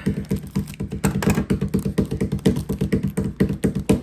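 Plastic pin pouch being cut with scissors and crinkled open by hand, a dense run of small crackles and clicks.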